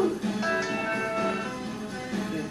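A steady horn-like tone of several pitches held for about a second, starting about half a second in, over soft background guitar music; it is taken in the room for a car horn.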